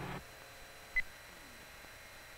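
A single short, high electronic beep about a second in, over faint hiss; a low hum cuts off just after the start.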